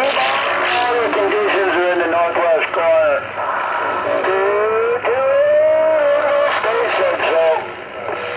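A distant station's voice coming in over a Galaxy CB radio's speaker, thin and hissy with the top end cut off: a long-distance signal coming in a little rough.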